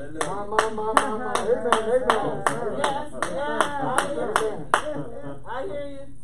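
Steady rhythmic hand clapping, about three claps a second, with a voice sounding over it. The clapping stops near the end.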